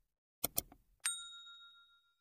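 A quick pair of sharp clicks, then a single high, bell-like ding that rings for about a second and fades away.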